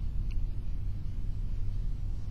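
Steady low rumble of background noise with no speech, and a faint brief tick about a third of a second in.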